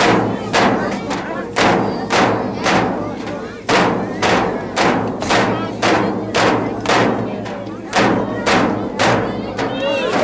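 Yup'ik frame drums struck in unison with thin sticks at an even beat of about two strikes a second, under a group of voices singing a dance song.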